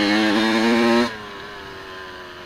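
Dirt bike engine pulling at high revs, then the note drops sharply about a second in as the throttle is shut, settling to a lower, quieter running sound.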